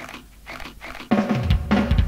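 Heavy metal band recording: a quiet passage of short repeated sounds, about four a second, then about a second in the full band comes in loud with drum kit and cymbals.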